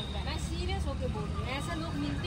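Quiet talking voices over a steady low rumble of road traffic.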